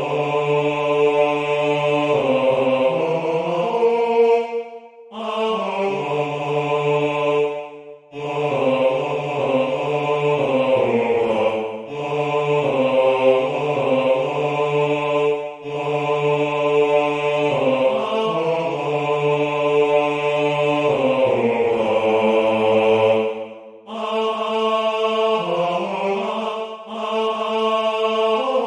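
A low male voice singing a slow melody in long held notes, with short pauses between phrases.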